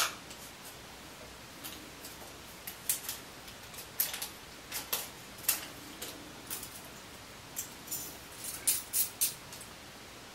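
Small, irregular clicks and light crinkling as a double-edge razor blade is unwrapped from its paper wrapper and loaded into a Gillette Super Speed twist-to-open safety razor, with a dozen or so sharp ticks scattered through.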